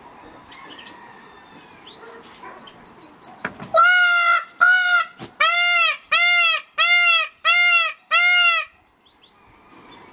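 Peacock calling: a series of seven loud, ringing calls, each rising then falling in pitch, repeated about every 0.7 s. The calls begin about four seconds in.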